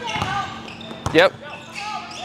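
Basketball dribbled on a hardwood gym floor, with one sharp bounce about a second in.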